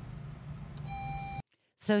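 A short electronic beep under a steady low hum, then the sound cuts off abruptly to silence just before a woman starts speaking.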